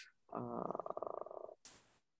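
A person's voice over a video call, making a drawn-out, creaky, buzzing sound for about a second, followed by a short hiss.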